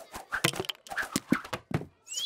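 Cartoon sound effects of sweets dropping and landing one after another on a paper-covered surface: a quick, uneven run of about a dozen light taps and plunks.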